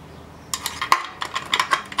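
Quick, irregular metal-on-metal clinking, about a dozen sharp taps with a short ringing tone, starting about half a second in.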